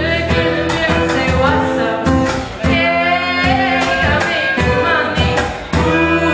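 A live band plays a song: strummed acoustic guitar, violin and drum kit with a steady beat, with singing over it.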